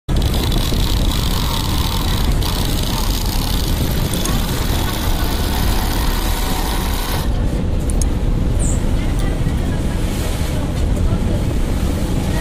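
Industrial flatlock sewing machine running, stitching blue binding tape through its folder attachment, over a loud steady low hum; the higher-pitched part of the noise drops away about seven seconds in.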